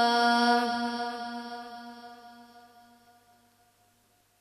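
A boy's unaccompanied voice, amplified through a microphone, holding one long, steady sung note at the end of a naat line, fading away over about three seconds.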